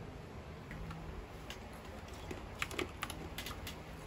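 Typing on an Anne Pro 2 mechanical keyboard with brown switches: a few scattered keystrokes, then a quick run of keystrokes from about two and a half seconds in.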